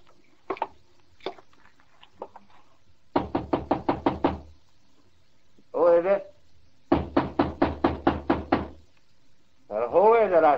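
Radio-drama sound effects: a few slow footsteps on a wooden floor, then two rounds of rapid knocking on a wooden door, about three seconds in and again about seven seconds in. A voice calls out briefly between the two rounds and again at the end.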